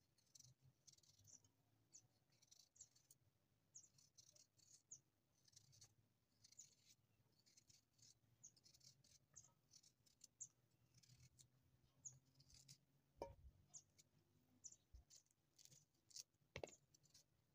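Faint, irregular scraping strokes of a kitchen knife cutting the skin off a small baby peach held in the hand, with one soft knock about thirteen seconds in.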